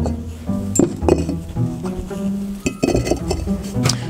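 Red perforated clay bricks being stacked on a table, giving a series of hard, sharp clinks as brick is set down on brick.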